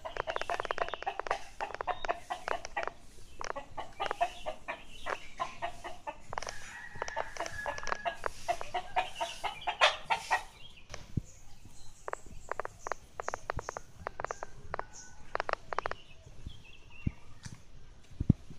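Chickens clucking in rapid, short repeated calls, thickest over the first ten seconds and sparser after.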